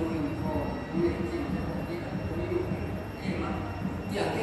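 A woman preaching a sermon through the pulpit microphone and the church's sound system, her speech continuing without a break over a low room rumble.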